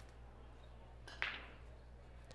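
Quiet room tone with a steady low hum. A little over a second in there is one brief, short noise.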